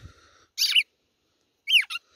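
Red-cowled cardinals calling: two short sharp calls, the second a quick downward-sliding note near the end.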